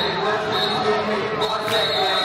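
A step line stomping on a gym floor while many voices chant and shout together.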